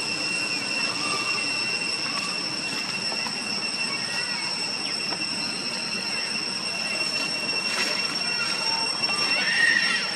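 Cicadas droning steadily at a high pitch over a background hiss, with a short high call near the end.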